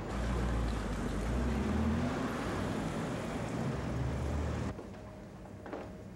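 City street traffic noise, a steady rumble and hiss of passing cars, which cuts off abruptly about four and a half seconds in to a much quieter indoor room tone.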